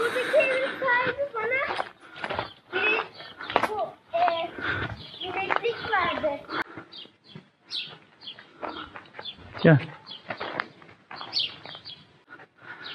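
Indistinct talking with birds chirping now and then.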